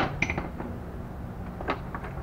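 Handling noise of gaskets being fitted onto an engine timing cover on a bench: one sharp click at the start, a lighter click just after, and another faint click near the end.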